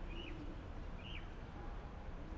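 Two short bird chirps, one just after the start and one about a second in, over a steady low outdoor background rumble.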